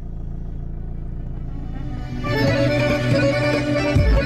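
Music starts playing loudly from a car's Delco CDR 500 stereo about two seconds in, as its volume knob is turned up. Before it, only the steady low hum of the idling car engine.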